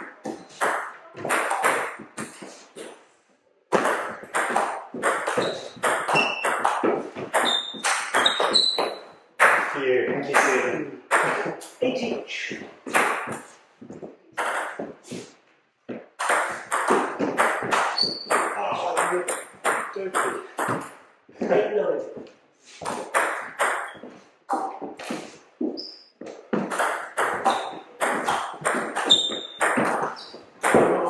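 Table tennis rallies: the ball clicking back and forth off the bats and table with short pings, in quick runs of strokes broken by two brief pauses between points.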